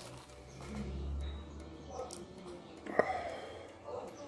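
A man's quiet breathing and mouth noises as he blows out through pursed lips against a building chilli burn, with a low rumble about a second in and a short sharp click about three seconds in.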